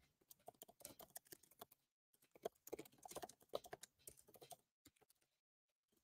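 Faint typing on a computer keyboard: quick, irregular key clicks in two runs, with a short pause between them and a silent gap near the end.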